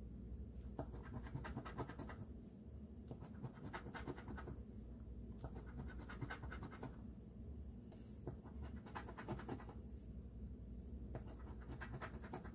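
A coin scratching the coating off a paper scratch-off lottery ticket in quick back-and-forth strokes, in about five short bouts with brief pauses between them.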